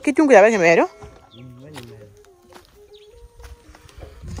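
A person's voice with a rising-and-falling pitch for about the first second, then low background with a few faint clicks and a faint distant voice.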